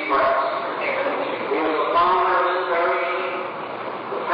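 Voices singing in a church, held notes running on without a break, on an old tape recording that sounds muffled with no high treble.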